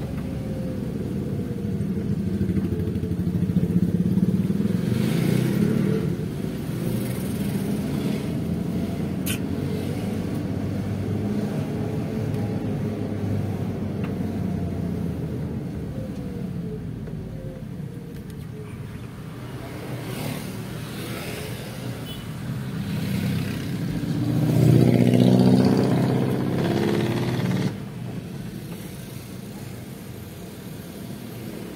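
Motor vehicle engine and road noise while driving in street traffic, with motorcycles among it; the engine pitch rises and falls as the vehicle speeds up and slows. A louder burst of engine noise near the end cuts off suddenly, and a single sharp click comes about nine seconds in.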